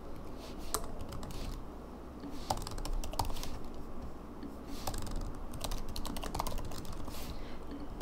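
Typing on a computer keyboard in a few short bursts of keystrokes, with pauses between them.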